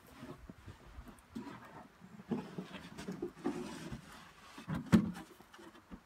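A homemade plywood concrete-pier form being lowered into a hand-dug hole and worked into place: irregular scraping and bumping of wood against soil, with a sharp knock just before five seconds in.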